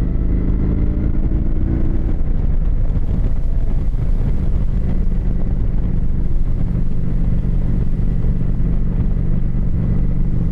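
Motorcycle engine running steadily while cruising along a road, with an even rush of wind noise.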